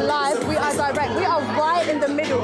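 A woman talking, over the chatter of a crowd.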